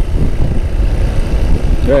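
Riding motorcycle at speed: heavy wind rumble buffeting the microphone over the engine and road noise. A voice starts just at the end.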